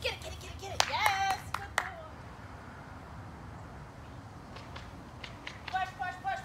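A few sharp handclaps about a second in, together with a short high-pitched cheer that falls in pitch. Then only a low, steady background until a rhythmic chanted voice starts near the end.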